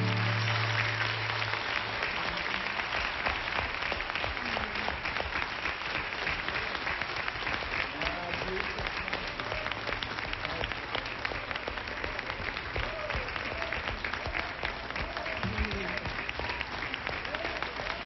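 A studio audience applauding steadily, a dense patter of many hands clapping, with a few voices calling out from the crowd. The last held note of the music dies away in the first second or two.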